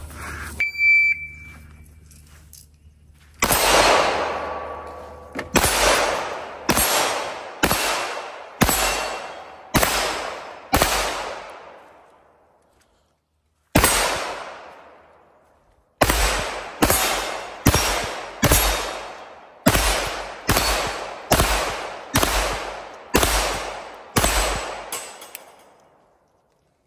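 A shot timer beeps once about a second in. Then a Canik TP9 Combat Elite 9mm pistol fitted with a compensator fires about twenty shots, each report ringing out and fading. There are eight shots about a second apart, a single shot after a pause, and then a faster string of about a dozen.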